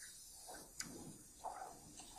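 Quiet room tone of a played-back interview recording between answers, with a faint tick a little under a second in and a couple of soft, indistinct low sounds.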